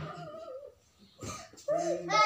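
A young girl's high-pitched, drawn-out whining voice, wavering in pitch, then a short noisy rustle, then another brief whine near the end.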